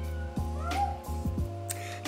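Background music with a steady bass line, with a domestic cat giving a short meow a little under a second in.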